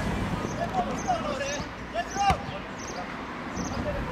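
Football players' shouts on an outdoor pitch, short calls coming and going, with one sharp thud of a ball being kicked a little over two seconds in.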